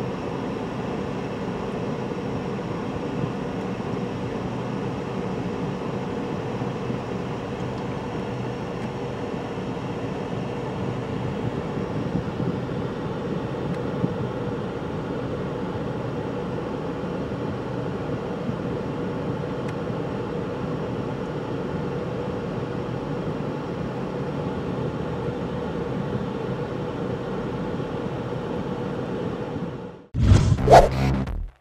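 Steady cabin noise inside a car moving slowly in traffic: an even engine and road hum with a constant faint tone, fading out at the very end.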